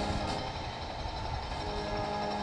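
Band music playing outdoors, thinning to a soft held chord before the tune picks up again, over a steady low rumble.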